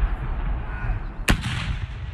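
One round of a ceremonial artillery gun salute: a single sharp report about a second and a quarter in, followed by a short rolling echo.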